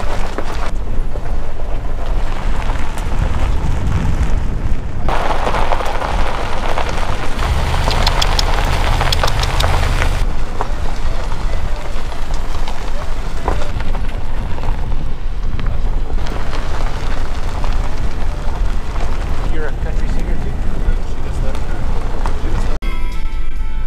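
Wind buffeting a microphone mounted on the hood of a pickup truck, with tyre and road noise from driving a gravel road. The noise changes abruptly a few times, and small sharp ticks come through around the middle.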